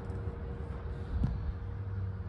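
Freightliner Cascadia semi-truck idling, heard from its cab as a steady low rumble, with one faint click about a second and a quarter in.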